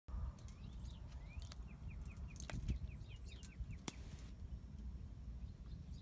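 Small birds chirping, with a quick run of short repeated chirps about two seconds in, over a low outdoor rumble and a thin steady high tone; two sharp clicks in the middle.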